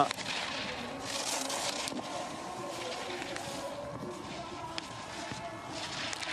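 Giant slalom skis carving turns on hard-packed snow: a scraping hiss that swells with each turn, roughly every two seconds. Faint distant voices underneath.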